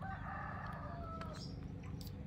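A single drawn-out animal call lasting about a second and a half, wavering in pitch and fading out near the middle.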